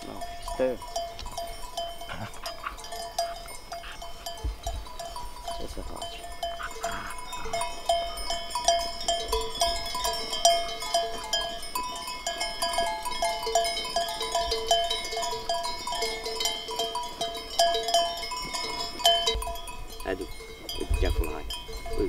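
Many sheep bells clinking and ringing unevenly and without a break as a flock of sheep grazes.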